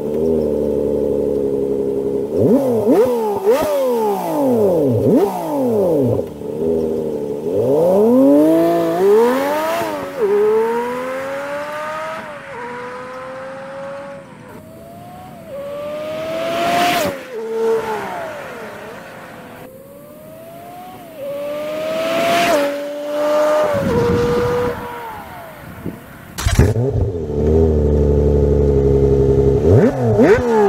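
Lotus Evora's V6 through its sports exhaust, played back sped up so it sounds high and thin: the car accelerates hard through a run of upshifts, each rising note dropping back at the shift, fading as it pulls away. Near the end it comes in loud and close, revving.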